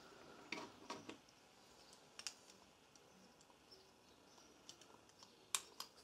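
Near silence broken by a few faint clicks and light taps as a small engine carburetor's metal parts are handled and fitted together. Two sharper clicks come shortly before the end.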